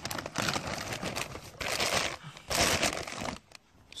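Plastic harvest bag rustling and crinkling in irregular bursts as a bunch of runner beans is put in among the other vegetables, with a short lull near the end.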